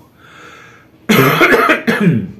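A man breathes in softly, then coughs loudly about a second in, a harsh burst lasting close to a second.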